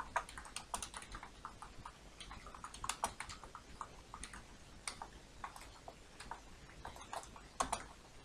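Computer keyboard being typed on: quiet, irregular keystrokes coming in short runs with brief pauses between them.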